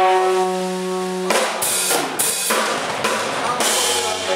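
Live rock band: a steady held note rings for about a second, then the drum kit comes in with a run of snare and bass-drum hits and cymbal crashes.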